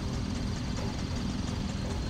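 Street traffic noise heard while stopped in a queue of vehicles: a steady low rumble from idling motorbikes and vehicles around, with a faint steady high whine.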